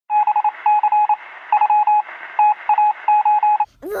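Electronic beeping sound effect: a single mid-pitched tone keyed on and off in quick short and longer beeps in an uneven rhythm, over a thin, hissy, telephone-like background. It cuts off just before the end.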